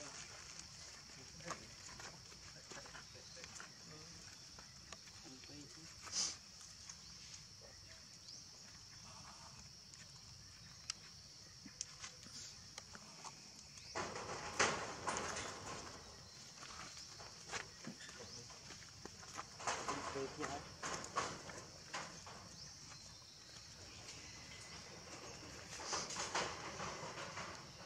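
Quiet outdoor ambience with a steady high-pitched hiss and scattered small clicks. About halfway through, and again a few seconds later, short bursts of voice come and go.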